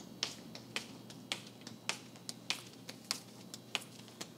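Footsteps clicking on a hard floor at a walking pace, about two steps a second, some steps louder than others.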